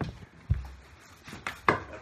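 Knocks and thumps of firefighter turnout gear being pulled on in a hurry. There is a low thump about half a second in, then two sharper knocks near the end.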